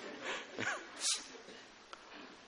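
Soft, breathy laughter: a few quiet chuckles with a short squeaky rise in pitch and a sharp outward puff of breath about a second in.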